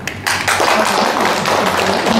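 People applauding together, the clapping starting suddenly about a quarter second in, at the close of a speech.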